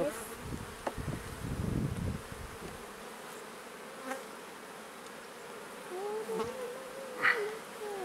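Honeybees buzzing over an open hive; in the last couple of seconds a bee flies close past, its hum wavering up and down in pitch. A few faint clicks come from the frames being pried loose with a hive tool.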